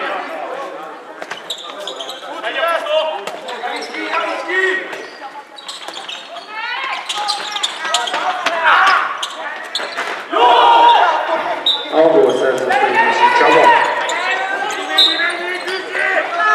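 A handball bouncing on a wooden sports-hall floor in repeated knocks, amid players' shouts that echo in the hall.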